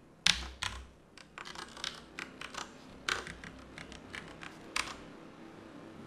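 Typing on a computer keyboard: a loud click just after the start, then a quick, irregular run of keystrokes that thins out near the end.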